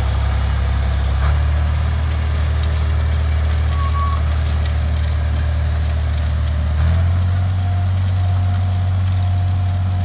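John Deere 4020 tractor engine running steadily while pulling a six-row corn planter, a loud low drone whose note shifts slightly twice.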